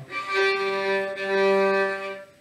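Violin bowing one long low note for about two seconds, played with the bow crooked rather than parallel to the bridge to show the poor tone this gives.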